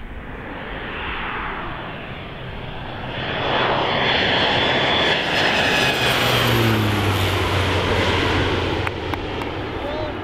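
Crop-duster airplane making a low pass overhead: its engine and propeller noise grows louder, peaks in the middle, and drops in pitch as the plane goes by.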